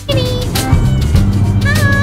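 A domestic cat meowing twice, a short call just after the start and another near the end, over background music with a steady beat.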